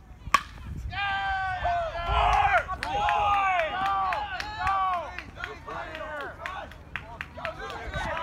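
A baseball bat hitting a pitched ball in one sharp crack, followed a moment later by spectators shouting and cheering for the hit for several seconds before the voices die down.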